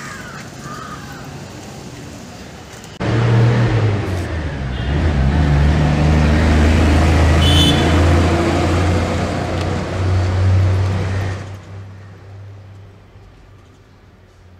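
A motor vehicle's engine running close by on a street, a steady low hum with traffic noise, starting abruptly about three seconds in and fading away after about eleven seconds.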